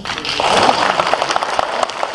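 Audience applauding: a dense run of hand claps that starts a fraction of a second in and carries on.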